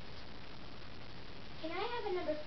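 Steady background hiss, then near the end a child's voice starts with a high, drawn-out call that rises and falls in pitch.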